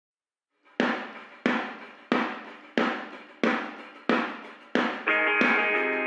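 A rock band's song intro: eight evenly spaced struck hits, about one and a half a second, each dying away, with a held chord coming in about five seconds in.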